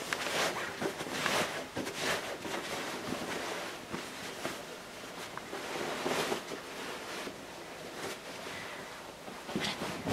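Cloth rustling and swishing in irregular soft brushes as a two-layer sewn fabric bag is pulled and pushed right side out through a small opening in its seam.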